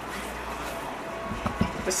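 Silicone spatula softly scraping creamed butter and sugar down the sides of a glass mixing bowl, faint, over a steady low hum.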